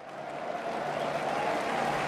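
Football crowd noise fading in, the even sound of many voices rising over the first second and then holding steady.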